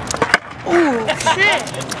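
Skateboard knocking: a few sharp clacks in the first half-second, then a voice saying "ooh".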